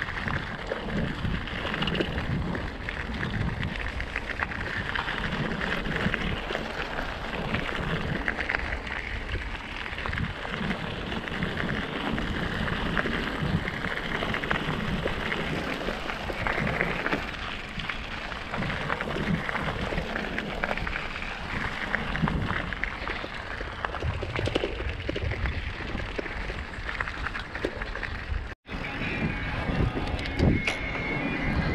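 Wind rushing over the microphone of a camera on a moving bicycle, with tyre and road rumble and small rattles from the bike. The sound drops out for a moment near the end.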